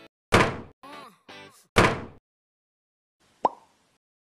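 Cartoon sound effects: two loud whacks about a second and a half apart, with short musical blips between them, then a brief pop near the end.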